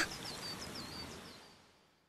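Faint outdoor ambience of birdsong: a quick run of short, high chirps over a soft hiss, fading out about a second and a half in.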